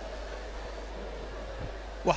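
Steady background hiss with a low hum from the microphone and sound system, and no distinct event.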